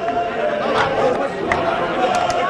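A group of men chanting together in chorus, with a few sharp hits among the voices.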